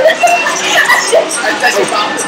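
R-series astromech droid toy chirping and warbling in short electronic beeps and whistles, over voices in the shop.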